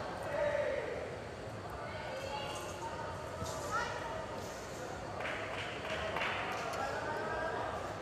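A wushu athlete's feet thudding on the competition carpet as she lands from a jump and stamps into stances, a few sharp thuds with the loudest about half a second in, over a steady murmur of crowd voices in a large arena.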